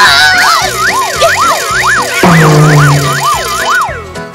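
A cartoon-style whistle sound effect swooping up and down in quick repeated arcs, about three a second, over background music, with a low droning tone joining about two seconds in.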